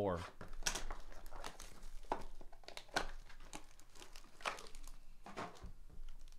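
A foil trading-card pack wrapper crinkling as it is handled and torn open: a run of irregular crackles.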